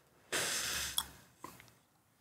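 One breath of about a second from a person smoking a joint, a drag or an exhale, with a sharp click near its end and a fainter click about half a second later.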